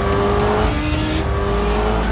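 Sport motorcycle engine running at high revs, its pitch rising slowly.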